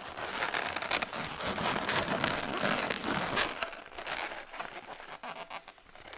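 Inflated latex twisting balloons rubbing against each other with many small crackling clicks as a 260 balloon is wrapped around the balloon figure. The handling noise is busiest for the first three and a half seconds, then turns fainter and more scattered.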